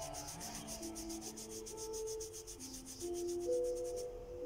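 A wipe rubbed rapidly back and forth over the skin of a forearm, taking off lipstick swatches, in fast even strokes that stop at the end. Soft music with long held notes plays underneath.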